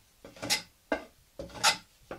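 Wooden hand plane cutting along the rough edge of a board held in a bench vise, smoothing it. Three strokes, the middle one shorter, each a brief noisy swish of the blade taking off a shaving.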